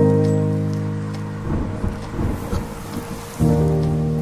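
Steady rain with a low, irregular rumble of thunder about halfway through, under a lofi hip hop track: a held chord fades over the first second and a half, and a new chord comes in near the end.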